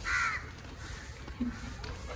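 A single short, harsh, caw-like animal call at the very start, then faint outdoor background.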